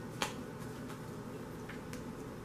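A single sharp click about a quarter of a second in, then two fainter clicks near the end, over a low steady room hum.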